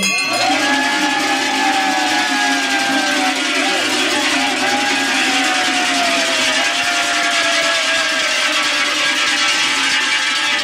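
Many large cowbells shaken together, making a continuous loud clanging. Over the clanging runs a long drawn-out tone that falls slowly in pitch.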